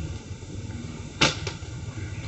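A Nerf Ultra foam-dart blaster firing once about a second in, a short sharp puff, followed by a fainter click a moment later.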